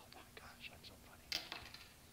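Quiet shop room tone with a faint steady hum, a few soft scattered clicks, and one sharper click a little over a second in.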